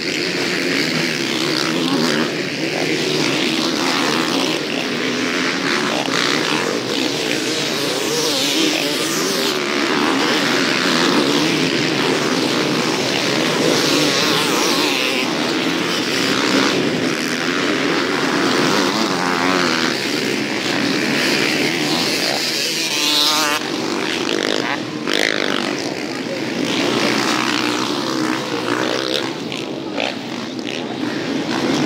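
Several motocross bikes racing together, their engines revving up and down continuously, with many overlapping rising and falling whines.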